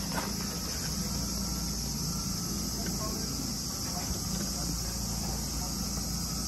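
Insects buzzing steadily in a high, unbroken band, with a low steady hum underneath.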